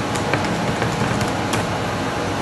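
A steady rushing background noise, the loudest thing heard, with a few faint clicks of typing on a MacBook's laptop keyboard.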